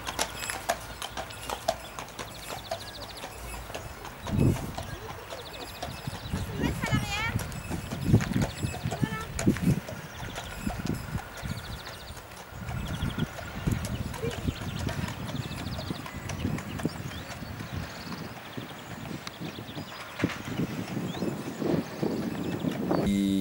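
Draft horses' hooves clip-clopping on an asphalt road at a walk as they draw a wooden horse-drawn caravan.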